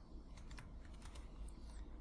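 Faint computer keyboard typing: a string of light, separate keystrokes.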